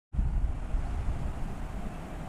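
Low, gusting rumble of wind buffeting the microphone, strongest in the first second and easing slightly after.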